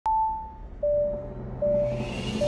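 Opening of an electronic TV news theme: one high beep, then two lower beeps about 0.8 seconds apart over a low synth drone.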